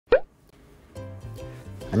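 A short, loud, rising 'plop' sound effect right at the start, followed about a second later by soft intro music with sustained pitched tones.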